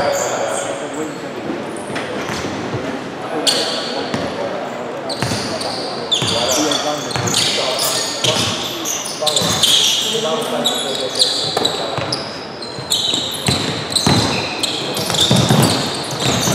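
Basketball game sounds in a gym: the ball bouncing on the hardwood floor, sneakers squeaking and players calling out, all echoing in the large hall.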